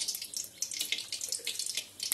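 Hot oil crackling and spitting in a steel wok as it heats, with dense irregular pops.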